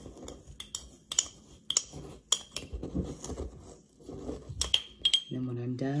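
Metal spoon stirring dry seasoning mix in a glass mason jar. It clinks against the glass in about ten sharp, irregular ticks, with the soft grating of the dry mix between them.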